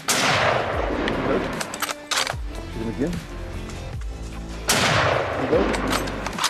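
Two rifle shots about four and a half seconds apart, each a sudden crack with a long fading tail, over background music.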